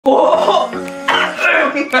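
Young men laughing and talking over background music.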